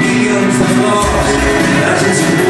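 A rock band playing live, with acoustic guitar, electric bass and drums, heard from among the audience in a large hall.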